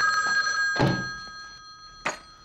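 Telephone bell ringing, its tone dying away over the second half, with a single thunk about a second in.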